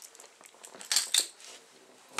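Plastic bag or packaging crinkling in the hands, in a few short bursts strongest about a second in, as bobber stoppers are fished out of a bag of tackle.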